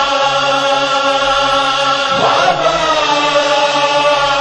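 Noha lament chanting: voices hold a long, steady droning note, and one voice slides down in pitch a little after the middle.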